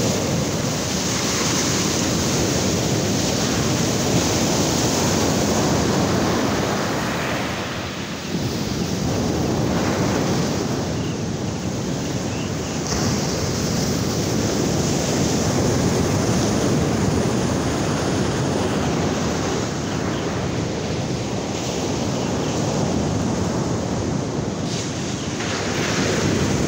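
Ocean surf breaking and washing up on a sandy beach, a steady rushing wash, with wind on the microphone.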